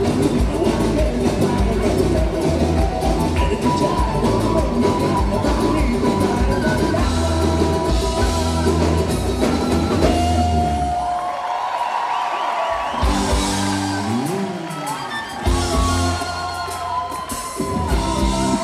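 Live band music with drums and bass. About ten seconds in, the drums and bass drop out, leaving a violin playing a melodic passage with sliding pitches. The full band comes back in about five seconds later.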